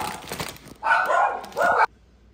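A dog barking twice, each bark about half a second long, the second cut off abruptly, after a chip bag crinkles in a hand.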